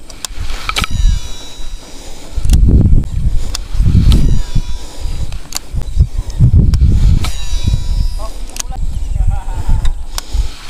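Shimano Antares DC baitcasting reel whining during a cast, twice: about a second in and again around seven seconds. Loud low rumbles on the microphone come in between.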